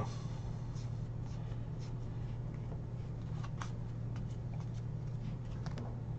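Trading cards being flipped through by hand: a few faint, scattered card-edge ticks and rustles over a steady low hum.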